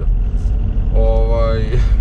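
Steady low road and engine rumble inside the cabin of a moving Opel Zafira, with a drawn-out wordless vocal sound from the driver about a second in.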